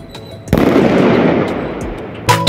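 Diwali firecrackers going off: a sudden burst about half a second in, then dense crackling that fades over about a second and a half, with a few sharp pops.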